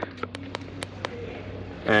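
A few light, sharp clicks and taps as a hand reaches around the car's driver's footwell toward the hood release, over a steady low hum.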